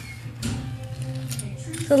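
Light plastic clicking and ticking from a small McDonald's Flutterbye fairy toy spinning on its plastic base, a few separate clicks over a faint steady hum.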